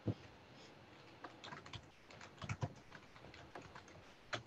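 Faint typing on a computer keyboard: irregular key clicks, mostly from about a second in.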